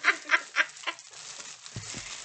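A woman laughing loudly in rapid, cackling bursts that die down about a second in.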